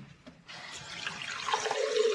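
Water running steadily, starting about half a second in.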